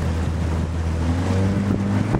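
A motorboat's engine running under wind noise on the microphone and rushing water. A little over a second in, the engine note shifts higher.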